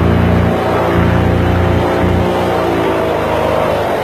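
Boat engine running hard under way, its pitch swelling and then easing off a little past the middle.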